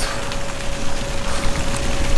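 Water splashing and sloshing around a swimmer moving at the surface, a steady wash of noise, with a faint steady tone underneath.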